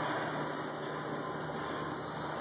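Stage-automation stair trolley's lift drive running steadily as the stair unit moves up, a continuous even mechanical hum with a low drone.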